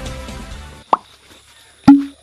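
Background music fading out, then two short pop sound effects about a second apart, the second louder.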